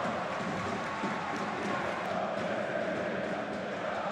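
Steady crowd noise from the stands of a football stadium, a continuous even hum of fans with faint massed chanting in it.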